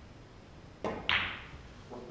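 Snooker shot: the cue tip strikes the cue ball with a soft click, and about a quarter second later the cue ball hits a red with a louder, sharper clack.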